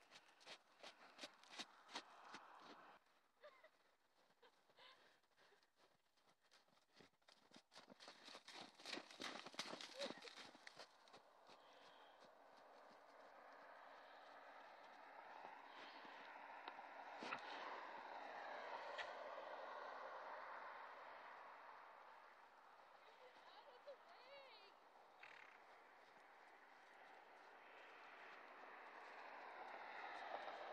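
Faint sounds of horses moving on snow: quick runs of soft hoof clicks in the first few seconds and again around nine to eleven seconds in. After that comes a faint even hiss that grows toward the end.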